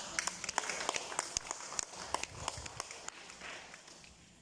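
Scattered applause from a small audience: irregular individual hand claps that thin out near the end.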